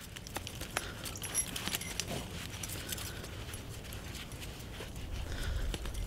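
Steel 220 body-grip trap and its chain clinking and rattling in gloved hands as a spring is squeezed by hand to set it: a run of faint, scattered metal clicks.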